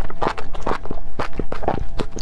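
Close-miked wet chewing of a mouthful of spicy enoki mushrooms and chopped chilies: a quick run of short, moist mouth smacks and squelches, several a second.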